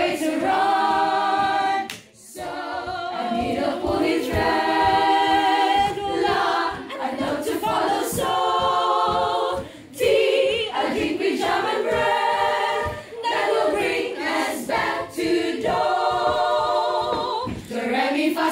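Children's choir singing a cappella, several voices holding long notes with vibrato, phrase after phrase, with brief breaths between phrases about two seconds in and again around ten seconds.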